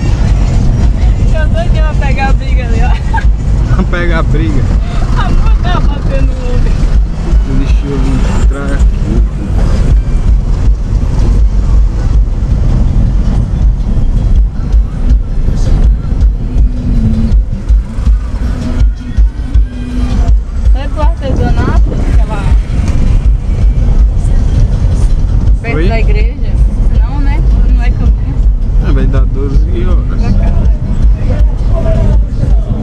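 Loud, steady low rumble inside a Ford Focus 2.0 cabin as it drives slowly over cobblestones, with voices coming and going over it.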